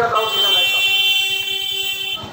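A vehicle horn held down for about two seconds as one steady tone, cut off at the end.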